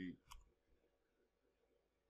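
Mostly near silence: a spoken word ends right at the start, then comes a single faint click about a third of a second in.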